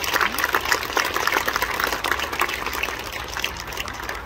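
Applause from a small audience: many quick hand claps at once, thinning out over the last second or so.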